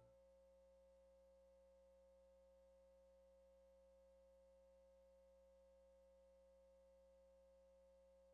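Near silence: only a very faint steady hum.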